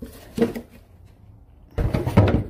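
Hard plastic knocks as a round plastic drain basin and its solid cover are handled: a sharp knock about half a second in, then a heavier, deeper thud near the end as the cover is set on the basin.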